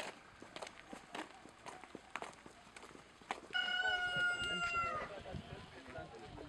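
A rooster crowing once, one long call of about a second and a half in the second half, over scattered faint clicks.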